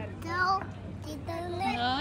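A toddler's sing-song vocalizing, the pitch sliding upward near the end, mixed with a woman's speech.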